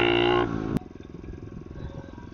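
A 110cc four-stroke pit bike engine holds a steady high pitch, then breaks off sharply about half a second in. It drops to a much quieter low rumble as it runs at low revs.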